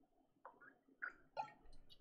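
Near silence with a few faint clicks and small taps from a bottle being handled at a desk, about three in the first second and a half, then smaller ticks.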